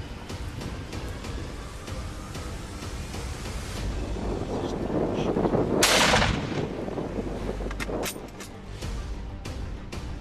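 Background music, swelling toward a single loud hunting-rifle shot about six seconds in, which is the loudest sound.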